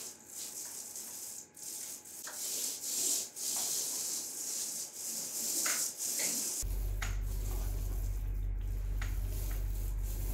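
Paint roller loaded with ceiling paint being rolled back and forth across a ceiling: a hissing, rubbing noise that swells and dips with each stroke. About two-thirds of the way in, a steady low hum joins it.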